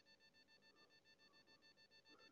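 Near silence: room tone with only a very faint steady electronic whine.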